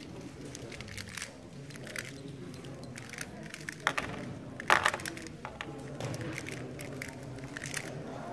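MGC magnetic Square-1 puzzle being turned fast in a speedsolve: a rapid run of plastic clicks and clacks from the layer turns and slices, with a few louder snaps, the loudest about halfway through.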